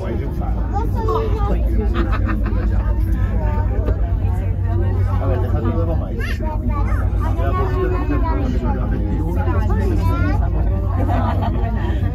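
Several passengers talking at once, overlapping voices, over a steady low rumble from the cable car cabin running down the line.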